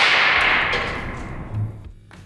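A resin-dipped tantalum capacitor failing violently under reverse bias: a loud hiss of burning, sparking material that starts right after the bursting crack and fades steadily away over about two seconds, with a small thud near the end.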